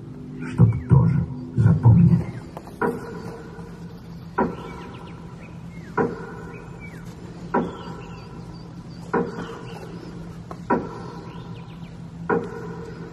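The last loud notes of a song die away in the first two seconds. Then a slow, even beat of single ringing strikes follows, about one every second and a half, over a low steady hum.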